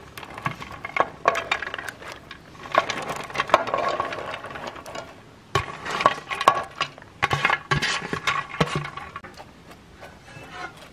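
Repeated clinks and light knocks on a metal rice-cooker inner pot as ingredients and a metal utensil go into it, some hits leaving a short ring. The sounds come in two busy spells with a brief lull about five seconds in.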